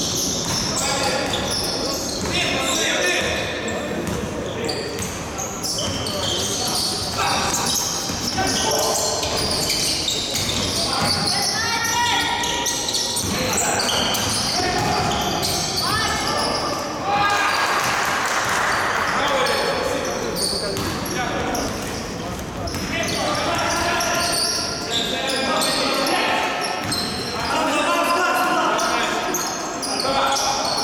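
Basketball being dribbled and bounced on a gym floor during a game, with players' voices calling out across the large hall.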